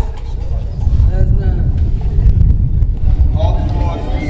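A few quiet spoken words from the stage over a heavy, uneven low rumble.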